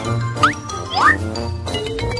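Light, jingly background music with a steady bass, with two quick rising glide sound effects about half a second and a second in.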